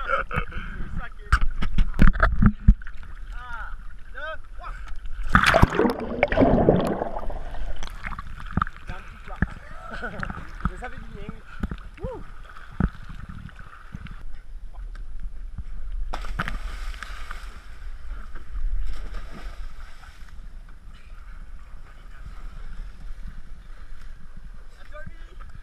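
Sea water sloshing and splashing against a camera held at the surface by a swimmer, gurgling as the lens dips in and out of the water. A louder rush of water comes about five seconds in.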